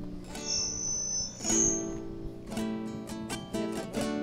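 Acoustic guitar played, a run of plucked and strummed chords ringing on, opening a song. A thin, high whining tone sounds over it for about the first two seconds.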